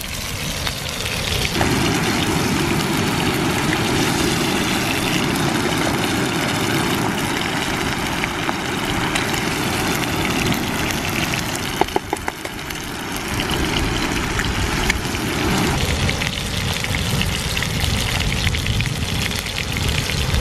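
Fish fingers and eggs frying in a pan over a wood-gas twig stove burning full bore: a steady sizzle over a low, rushing fire noise, with a few sharp clicks about midway.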